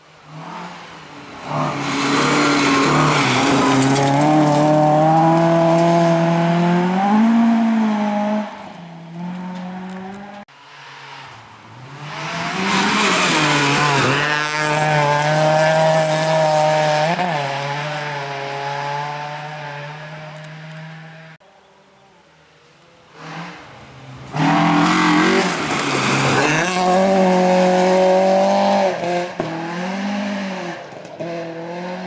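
Three rally cars, one after another, driving hard past on a gravel stage: engines held at high revs with pitch dips at gear changes and lifts, over a hiss of tyres on loose gravel. Each pass is cut off suddenly.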